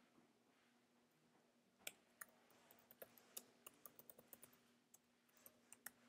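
Faint typing on a computer keyboard: irregular keystroke clicks starting about two seconds in.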